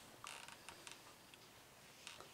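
Faint brushing of a thick cotton sock on a wooden floor as the foot shifts, about a quarter second in, followed by a few small creaks.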